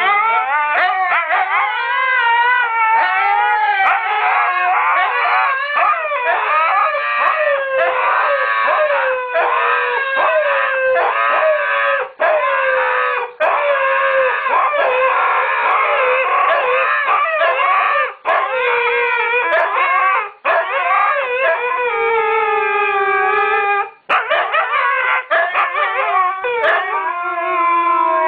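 Husky howling: long, continuous howls that waver up and down in pitch, broken only by a few brief pauses for breath.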